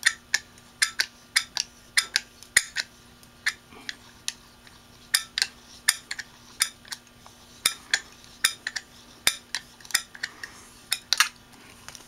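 Light, irregular metallic clicks and taps, two or three a second, from an opened Maxtor DiamondMax 9 hard drive as its read/write head is held down against the platter by hand to force a head crash.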